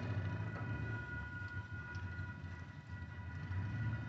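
Railroad grade crossing warning bells ringing steadily at a faint level, over a low rumble.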